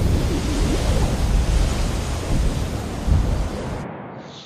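Wind buffeting an outdoor microphone: a loud, steady rushing noise with a deep rumble that cuts off abruptly just before the end.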